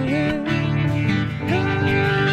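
A small band playing live: two acoustic guitars strummed with a keyboard, and two voices holding sung notes in harmony that slide up to new notes about three quarters of the way through.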